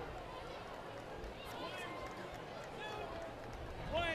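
Stadium crowd murmur, with a few faint distant shouts in the second half.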